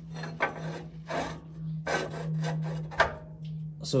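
Irregular scraping and rubbing strokes as a rubber body-mount bushing is worked against the car's steel frame, over a steady low hum.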